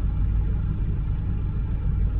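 Steady low rumble of a vehicle engine idling, heard from inside the cab.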